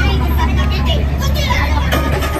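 A group of young women shouting and singing together inside a bus, over a steady, heavy low rumble.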